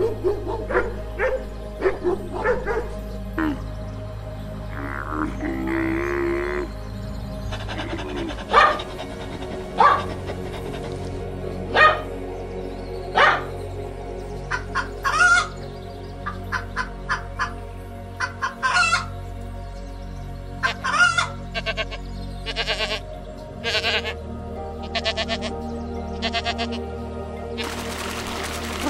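Cheerful background music with a steady bed of tones, over a run of short animal calls: quick dog yips and whines at first, then sharper single calls every second or so from about eight seconds in.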